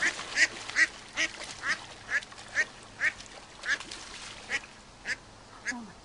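Mallards calling in alarm during a pike attack on the brood: a run of about a dozen short calls, roughly two a second, growing fainter near the end.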